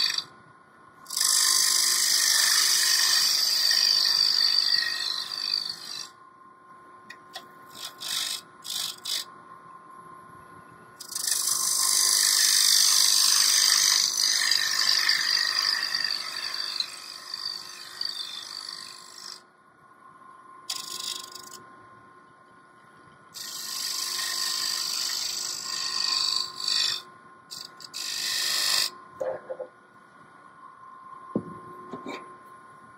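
Hand-held gouge cutting a spinning wood blank on a lathe, shaping a tenon. There are several spells of hissing cutting, the longest lasting several seconds, with short touches of the tool between. In the pauses the running lathe gives a faint steady whine.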